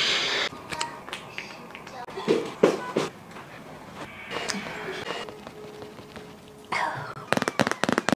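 Brief snippets of voice and edited-in sound effects, with a quick run of sharp crackling clicks about seven seconds in.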